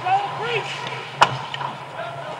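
A single sharp crack of a hockey puck being struck, a little past halfway, after a few short shouted calls from players on the ice.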